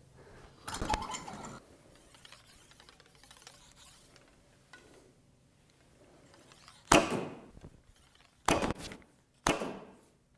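A traditional bow being shot: a sudden sharp release with a short decaying ring from the string about seven seconds in, followed by two more sharp knocks near the end. A brief clatter is heard about a second in.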